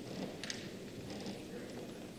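Faint room tone in a pause between spoken phrases, with a couple of faint small clicks about half a second in.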